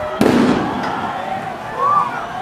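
A tear gas canister fired once: a single loud bang about a fifth of a second in, with a short echoing tail.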